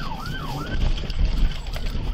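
Police car siren in a fast up-and-down yelp, heard from inside the pursuing patrol car, dropping out briefly around the middle. Under it is a heavy low rumble, loudest about a second in, as the car crosses rough grass.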